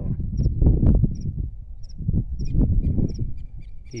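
Low, uneven rumbling noise on the phone's microphone, the loudest sound. Above it a frog calls faintly: a high double chirp repeated about every 0.7 s, with a thin steady trill for about a second near the middle.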